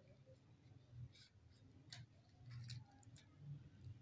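Near silence broken by a few faint clicks and crinkles of a small clear plastic packet being handled.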